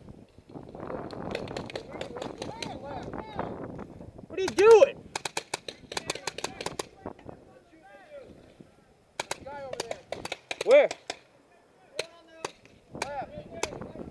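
Paintball markers firing in quick bursts of sharp pops, first about four and a half seconds in, again about nine seconds in, with a few single shots near the end.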